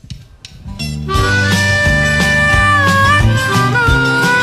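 A live country band starts playing about a second in: a held, bending lead melody over guitar and bass, the instrumental opening of a song.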